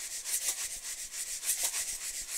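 A steady, rhythmic hissing chug, like a train's chuffing, at about four to five soft strokes a second.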